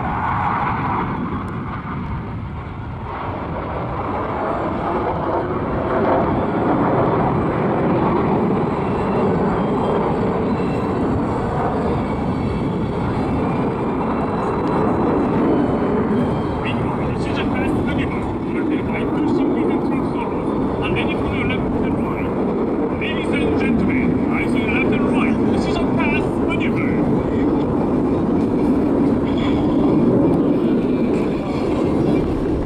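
KAI T-50 jet trainers' single F404 turbofan engines heard from the ground during an aerobatic display: a steady, loud jet rumble that swells about five seconds in as the jet passes. Faint voices come through underneath in the second half.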